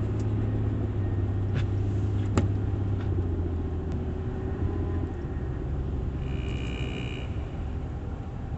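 Car cabin rumble from the engine and road noise while driving, steady and low, with a couple of light clicks. A brief high tone sounds for about a second near the end.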